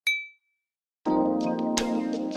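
A single bright ding, a notification-bell sound effect, rings right at the start and fades within half a second. About a second in, background music starts, with sustained chords and sharp percussive hits.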